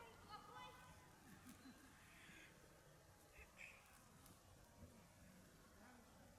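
Near silence: faint outdoor background, with a few faint, brief pitched sounds in the first second that then die away.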